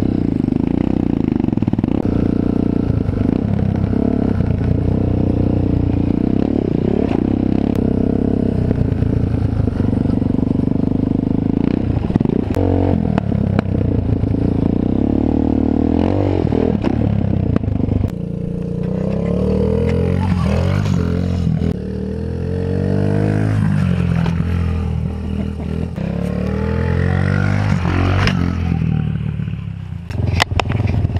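Small dirt bike engine running close by as it rides over bumpy grass, revving up and down, its pitch rising and falling several times in the second half.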